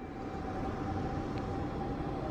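Fire engine siren heard from a distance, holding one steady wailing pitch, over a continuous low rumble.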